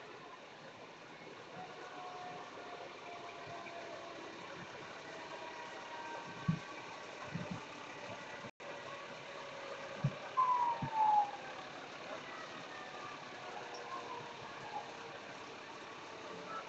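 Fire trucks, an aerial ladder truck closest, driving slowly past with their engines running over a steady street hum. The engine notes glide gently down in pitch as they go by, and a few short low thumps come in the middle.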